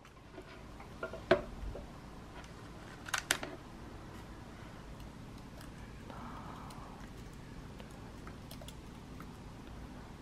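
A laptop power connector clicking into a MacBook Air about a second in, a few more clicks around three seconds, then soft, faint keyboard typing in a quiet room.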